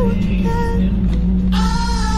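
A pop song with a sung melody gliding up and down over a steady bass.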